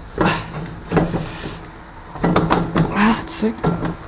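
Metal clinks, knocks and scraping from hand work on a quad's rear axle and sprocket assembly, in a few separate bursts with a busier run of sharp clicks past the middle.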